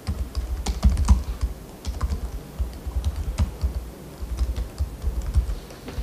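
Typing on a computer keyboard: irregular clusters of quick keystrokes, each with a dull low thud.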